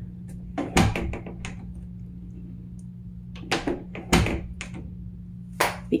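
Interior door's lever handle and latch clicking, with the door knocking against its frame, in several clusters about a second in, around the middle and near the end. The owner figures the latch is not catching properly.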